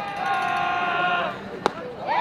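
A long drawn-out yell held on one pitch for about a second and a half, typical of dugout or crowd chatter during a pitch. A single sharp crack comes shortly before the end.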